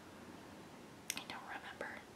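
A woman whispering briefly under her breath, starting about a second in, over faint room tone.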